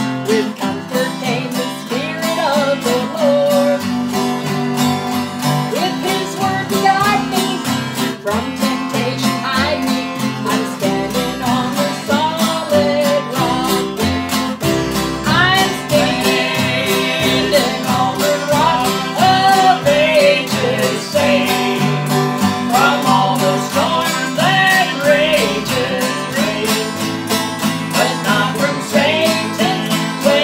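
Acoustic guitar strummed in a steady rhythm, accompanying a woman singing an old gospel hymn in a country/bluegrass style.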